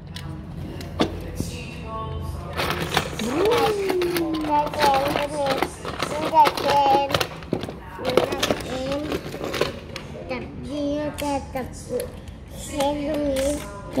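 A young child's voice talking and vocalizing in sing-song glides, with light clicks and knocks of small die-cast toy cars handled on a plastic playset.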